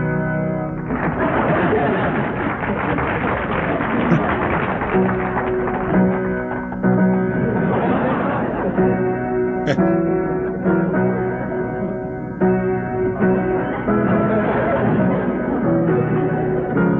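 Piano playing a lively overture tune, with notes changing every half-second or so.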